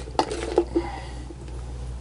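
Kitchen utensils knocking and clicking against a dish in food preparation: a few sharp taps in the first half second, then quieter, softer handling noise.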